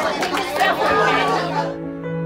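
Room full of people chatting and talking over one another, cut off suddenly near the end by soft background music of long held notes.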